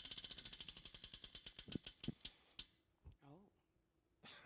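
Tabletop prize wheel spinning down, its pointer ticking rapidly against the pegs around the rim: about a dozen clicks a second at first, slowing and stopping about two and a half seconds in. A brief faint voice sound follows.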